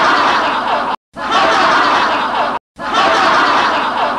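Audience laughing hard, a stock laugh track in three loud bursts, each cutting off suddenly before the next begins.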